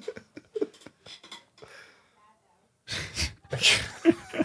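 Homemade mouth-made sound effects on an old BMX video's soundtrack: a few short vocal bits, a brief pause, then a loud hissing, spluttering burst lasting about a second, about three seconds in.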